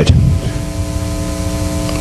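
Steady electrical hum and hiss with a low rumble underneath; from about half a second in, several faint held tones join it.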